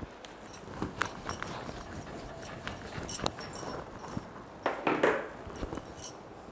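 A whiteboard being wiped with a duster and written on with a marker: scattered sharp clicks and taps, with a louder burst of rubbing near the end.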